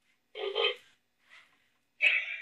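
WowWee Femisapien toy robot giving a short synthesized vocal utterance, a brief burst beginning about a third of a second in, then a fainter short sound near the middle.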